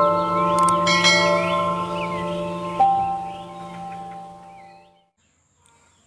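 Short intro jingle of ringing bell-like tones over a low held drone, with a few new notes struck in the first three seconds and all of it fading out about five seconds in.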